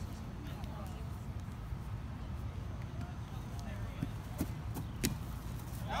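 Steady low background noise with faint distant voices, then one sharp thump about five seconds in: a foot kicking a rubber kickball.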